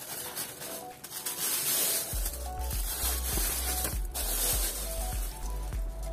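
Thin plastic bags rustling and crinkling as they are lifted off seed pots, with a steady low rumble coming in about two seconds in.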